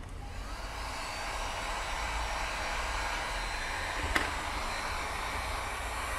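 Electric heat gun coming up to speed in the first second or so, then running with a steady fan whoosh as it blows hot air on a plastic headlight to soften the thick lens glue. One short click about four seconds in.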